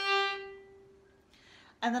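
A single accented down-bow note on a violin, third finger on the D string (a G), loud at first and ringing away over about a second.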